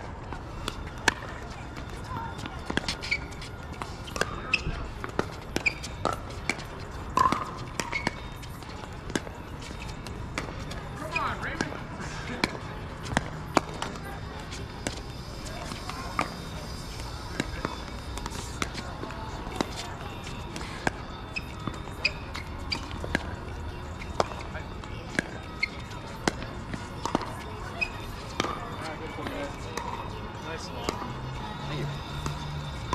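Pickleball rally: hard paddles popping against a plastic pickleball and the ball bouncing on the court, sharp pops coming irregularly, about one to three a second.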